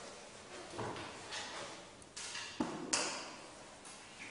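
Small handling noises from pupils working at their desks: scattered rustles and a few light knocks, the sharpest a click about three seconds in.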